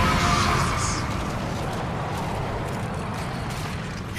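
Anime explosion sound effect: a loud blast at the start that settles into a steady rumble that eases slightly.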